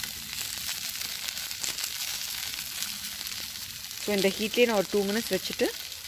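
Chicken pieces sizzling on aluminium foil over a hot grill: a steady hiss with faint crackles, with a voice over it from about four seconds in.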